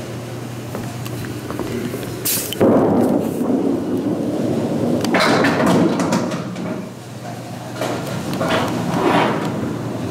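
A small candlepin bowling ball hits the wooden lane with a knock a little over two seconds in and rolls down it with a loud rumble. It strikes the pins with a sharp clatter about five seconds in, followed by several seconds of rattling from the pins and the pit.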